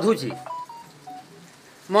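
A man's voice finishes a word, then a few short, faint beeps at different pitches sound in quick succession during the pause.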